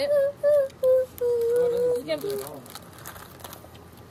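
A child humming a short tune with closed lips: a few short notes, then one longer held note that ends about two seconds in.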